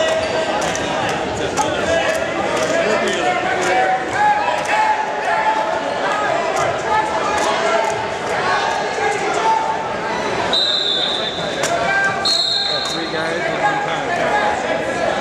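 Spectators and coaches shouting over one another in a gym during a wrestling bout, with scattered thuds and knocks. Near the end come two short, high, steady tones, each under a second long.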